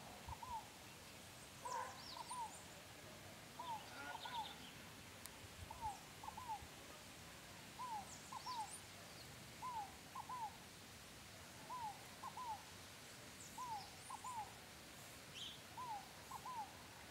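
A bird calling over and over: a short down-slurred whistled note followed by a quick pair of the same notes, the group repeated about every two seconds. Faint high chirps from other birds come in now and then.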